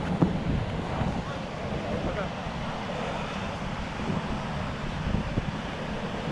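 Wind buffeting the microphone in a steady rumble, over the wash of surf breaking on the beach.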